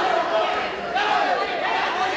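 Many voices from the ringside crowd shouting over one another, steadily, during a live boxing bout.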